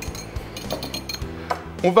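Wire whisk clinking a few times against a small ceramic bowl of egg yolk and cream being beaten into a liaison.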